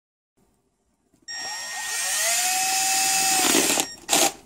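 Power drill starting about a second in, its motor whine rising and then holding steady as the bit bores through a shoe. It stops just before the end.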